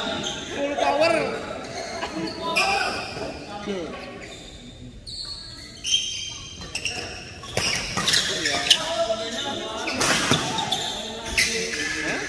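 Badminton rally in a reverberant indoor hall: sharp racket hits on the shuttlecock and players' feet on the court, with players' voices calling. A lull falls a little before the middle, then the hits come thick and fast.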